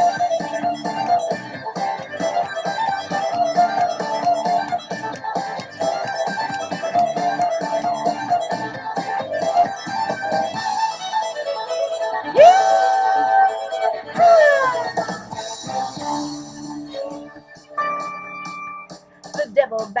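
Country backing track with a fast fiddle run over a steady beat. About halfway through the run stops, and long held notes with bending and falling pitch follow.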